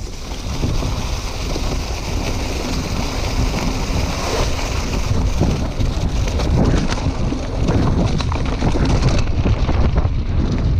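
Wind buffeting an action camera's microphone on a moving Scott Scale 950 hardtail mountain bike, over a steady rumble of the tyres on a leaf-covered dirt trail. The bike rattles and knocks over bumps, busier in the second half.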